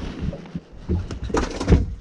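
Cloth rubbing and bumping against the camera's microphone, a muffled rustle with a few low thumps, the loudest about three-quarters of the way through.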